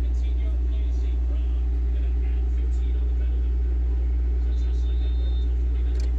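Steady low electrical hum from the turntable and amplifier setup, even in level throughout.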